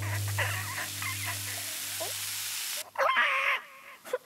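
Cartoon ostrich's wordless voice straining under a heavy load: wavering squeaks in the first second or so, then a louder squawk about three seconds in. Under it, a low hum fades out after about two and a half seconds.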